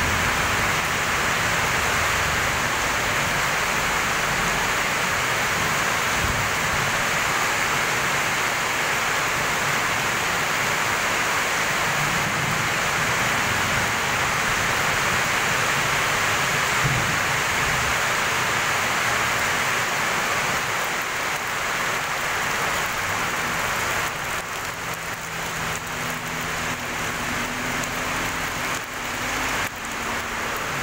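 Heavy tropical downpour falling steadily on wet pavement and roofs, a dense unbroken hiss of rain.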